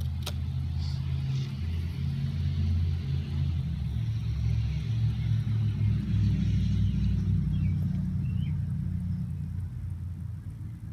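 A low, steady rumble that swells slightly in the middle, with two faint short chirps near the end.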